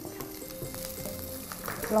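Chopped garlic and green chillies sizzling in oil in a wok while being stirred with a spatula, with a few light scraping ticks, over soft background music.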